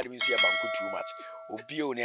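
A bell-like metallic ding: several clear tones struck together, held for about a second and a half, then stopping.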